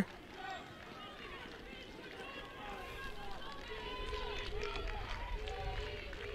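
Open-air football pitch ambience: many faint voices of players and spectators calling and shouting at once over a low rumble, slowly getting louder.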